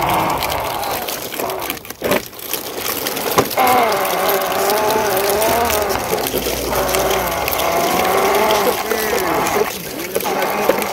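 A person's voice droning in long, wavering tones with no words, imitating a truck engine. There is a sharp knock about three and a half seconds in.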